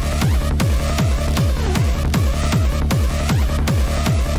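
Hard techno track playing: a fast, steady kick drum, about four beats a second, each kick falling in pitch, under a repeating synth figure.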